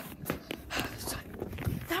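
Handling noise of a phone rubbing and bumping against a jacket while the person carrying it runs, with scattered footsteps.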